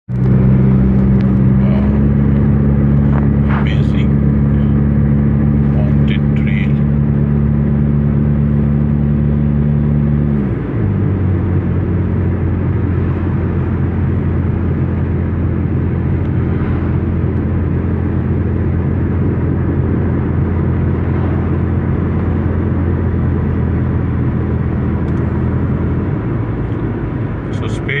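Car engine and road noise heard from inside the cabin while cruising on a highway: a steady low drone whose pitch drops about ten seconds in, then holds steady again.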